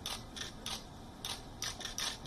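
Camera shutters clicking, several sharp clicks at irregular spacing, as at a press photo call.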